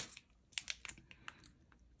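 Faint, quick scratchy taps of a pen coloring in boxes on a paper game sheet, a handful of short strokes in about the first second and a half.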